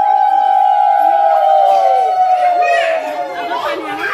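Several women ululating (Odia hulahuli) together in one long, high, held trill, which tails off with a falling pitch about three seconds in.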